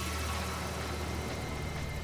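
A steady low hum with hiss above it, unchanging throughout.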